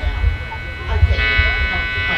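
Electric bass guitar played through an amp, low notes plucked loosely between songs, and from about a second in an electric guitar amp's steady buzz joins in.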